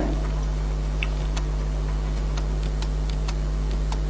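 Room tone through a lecture microphone: a steady low electrical hum with faint, irregular small clicks scattered through it.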